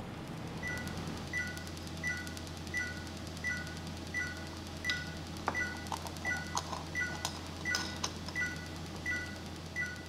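Er:YAG conservation laser sounding its two-note beep, high then slightly lower, repeating about every 0.7 seconds while the laser is armed and in use, over a steady low hum from the equipment. A few sharp clicks come in the second half.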